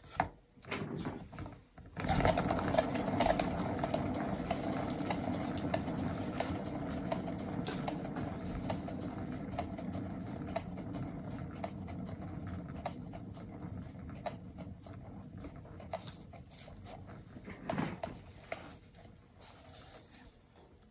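A turntable spins a freshly poured acrylic canvas, making a steady whir that starts abruptly about two seconds in after a few knocks. The whir fades slowly as the turntable coasts down.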